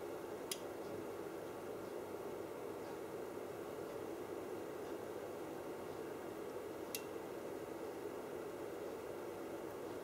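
Steady faint hiss of room tone, with two faint clicks of the test equipment's controls being worked, one about half a second in and one about seven seconds in.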